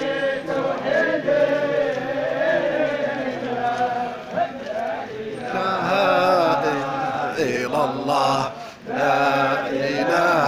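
A large crowd of men chanting together in unison. The voices are steady and get slightly fuller past the midpoint, with a brief break for breath near the end.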